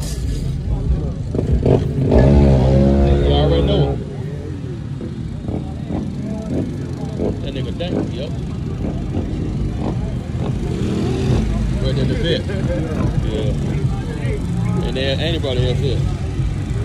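Car engine running steadily with a low rumble, revved up and back down briefly about two seconds in. People talk indistinctly in the background later on.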